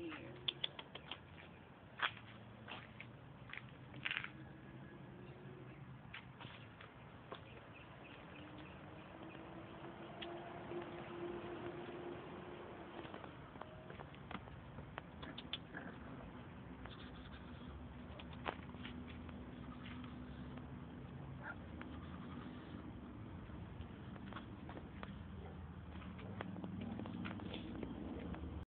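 Pit bull puppies moving about on pavement: faint scattered clicks and patter, most frequent in the first few seconds, over a low outdoor background with a faint hum that comes and goes.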